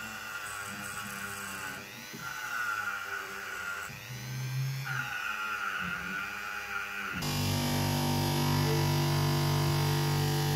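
Hand-held rotary tool running with a small wheel against brass valve-stem threads, its whine dipping in pitch a few times as it is pressed on. About seven seconds in it gives way to a bench polisher motor running steadily with a low hum.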